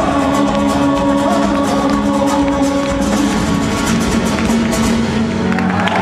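Live rumba flamenca band playing loudly: several strummed acoustic guitars over bass, drums and hand percussion, an instrumental stretch with little or no singing.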